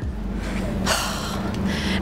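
A woman's sharp intake of breath about a second in, then a second, softer breath near the end, over a steady low background hum.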